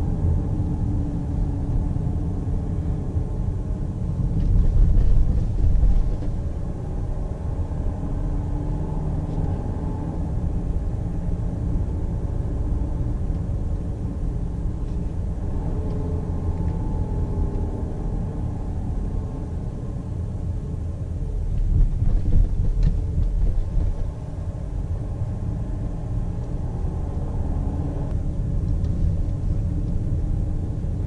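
Volvo XC90 D5's four-cylinder twin-turbo diesel and its tyres heard from inside the cabin while driving: a steady low rumble with an engine note that rises and falls gently. The rumble grows louder for a couple of seconds about four seconds in and again a little past twenty seconds.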